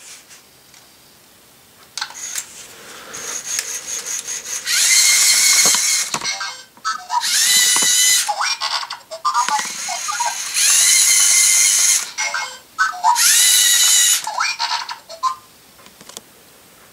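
LEGO Mindstorms EV3 SPIK3R scorpion robot running its claw-attack program. Clicks of its motors and gears come first. From about five seconds in the brick's small speaker plays five loud electronic sound effects of about a second each, each rising in pitch at its start and then holding, with a hiss on top.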